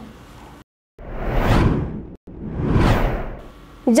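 Two whoosh sound effects from a news-bulletin transition, each swelling up and fading away over about a second, one right after the other.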